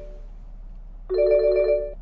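Phone ringing with an incoming call: the end of one ring fades out at the start, then a second ring of the same steady tones comes about a second in and lasts under a second.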